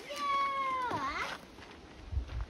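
A child's long, high-pitched drawn-out 'yeah', lasting about a second, its pitch sagging slightly and then bending near the end; it sounds much like a cat's meow.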